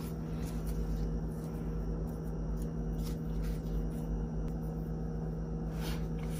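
Steady low hum in a small room, with a faint brief tap near the end.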